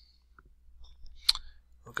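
A single sharp computer mouse click about a second and a half in, after a few fainter ticks, over a faint low hum. A voice begins right at the end.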